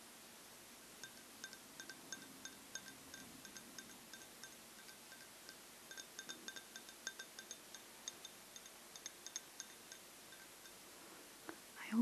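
Faint, light clinks of a drinking glass held in the hands, each ringing briefly at the same few pitches. They come in an irregular patter of several a second, with a short lull around the middle.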